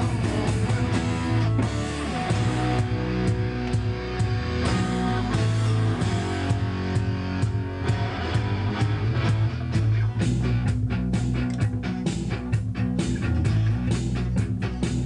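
Live rock band playing an instrumental passage with electric guitars and bass guitar, the bass holding steady low notes. In the second half the rhythm tightens into a run of evenly spaced, punchy strokes.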